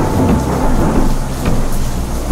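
Thunder sound effect: a crash of thunder that rumbles on and fades away toward the end, over a low music bed.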